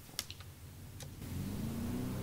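Lawnmower engine sound effect: a few sharp clicks, then the engine catches just past the middle and rises in pitch as it starts up.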